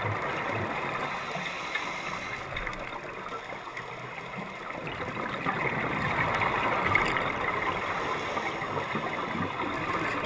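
Rushing, gurgling water noise that swells and fades over several seconds and is loudest about seven seconds in.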